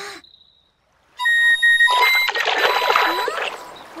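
A few short, high ocarina notes start about a second in, then about a second and a half of splashing water as fish gather in the stream.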